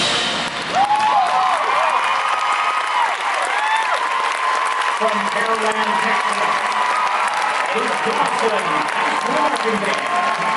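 Stadium crowd applauding and cheering just after a marching band's closing music cuts off, with high whoops over the clapping in the first few seconds and shouting voices later on.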